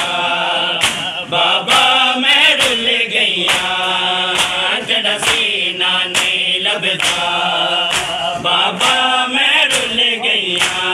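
A crowd of men chanting a Punjabi noha in unison, with the rhythmic slap of matam, bare-chested mourners striking their chests with open hands together, about once every 0.7 seconds.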